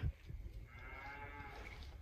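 A cow mooing faintly: one long call starting about half a second in, its pitch rising a little and then falling.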